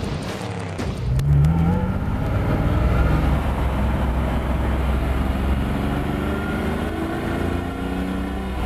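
1967 Lamborghini 400 GT's four-litre V12 engine accelerating on the road. The revs climb sharply about a second in, then the engine note rises slowly and steadily as the car pulls.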